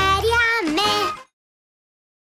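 A child's singing voice with a children's-song backing, holding its last notes; it stops abruptly about a second in, and the rest is dead silence.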